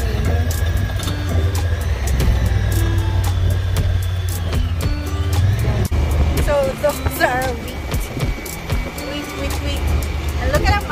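Background music over the low rumble of a side-by-side utility vehicle's engine driving along a dirt track.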